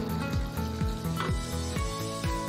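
A pot of cabbage sambar simmering with a soft sizzling hiss as the liquid is stirred with a ladle, under background music with a steady beat.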